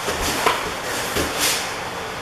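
Two grapplers scuffling on foam mats, gi fabric rubbing and bodies shifting, with a sharp thump about half a second in.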